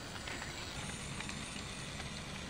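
Small homemade robot with plastic wheels and a gear motor rolling over gritty pavement: a steady faint crackle with light ticks.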